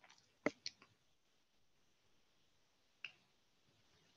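Near silence broken by a few small clicks: a quick cluster of four or five in the first second and a single one about three seconds in.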